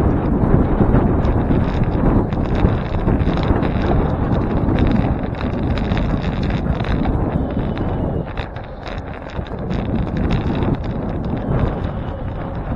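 Wind buffeting the microphone of a bicycle-mounted camera while riding, over a steady rumble of tyres on pavement, with frequent small rattles and knocks from bumps in the road. The noise eases a little about two-thirds of the way through.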